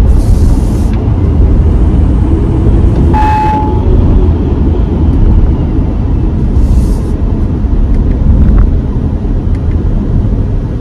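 Steady low rumble of road and engine noise inside the cabin of a 2023 Audi Q5 with its 2.0-litre turbocharged engine, slowing from about 50 to 36 mph. Brief hisses come near the start and at about seven seconds, and a short single tone sounds about three seconds in.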